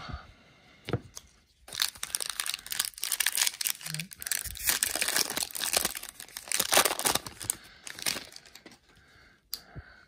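A plastic Topps baseball card pack wrapper being crinkled and torn open by hand: a dense crackle starts about two seconds in and lasts until about eight seconds.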